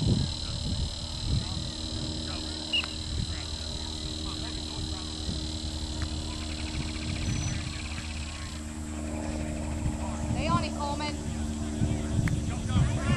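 Distant, indistinct voices of youth soccer players and spectators, with a few short calls about ten seconds in.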